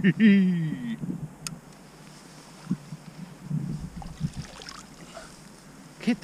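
A man laughing briefly, the loudest sound. It is followed by quieter low bumps and rumbles, with a single click.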